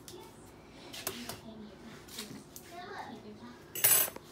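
A single sharp crack near the end as an egg is knocked against the edge of the bowl, with a couple of faint light clicks earlier.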